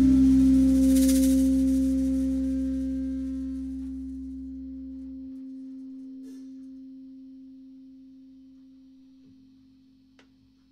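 The final chord of a rock band ringing out: electric guitar and electric bass notes sustaining with a cymbal wash, slowly fading away. The cymbal dies out within the first few seconds and the low bass note stops about halfway through, leaving the guitar tone to fade out.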